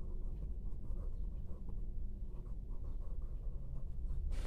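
Pencil scratching on notebook paper as a couple of words are written by hand, over a low steady hum.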